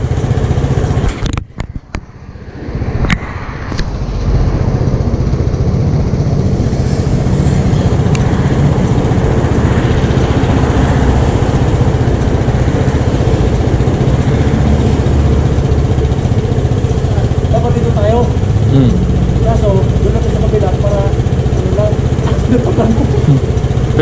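Street traffic noise with motor scooter engines running nearby as a steady low rumble, briefly dropping out about two seconds in. Voices can be heard near the end.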